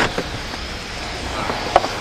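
A vehicle engine idling: a steady, even hum with outdoor background noise and a faint tick near the end.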